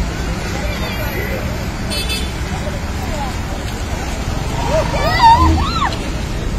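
Crowded bus running with a steady low engine rumble, under the babble of passengers' voices; about five seconds in, someone calls out loudly.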